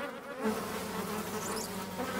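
Flies buzzing around a heap of rotting garbage: a steady, low cartoon sound effect that comes in about half a second in.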